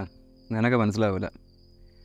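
Crickets trilling faintly and steadily in one unbroken high note, with a short spoken phrase about half a second in.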